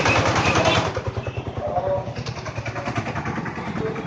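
Motorcycle engine running close by, its exhaust pulsing fast and evenly, loudest in the first second, with voices over it.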